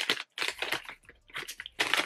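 A brown paper bag crinkling and rustling as it is opened by hand, in a run of short crackles with a brief lull about halfway.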